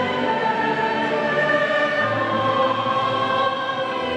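A choir singing long held notes with instrumental accompaniment.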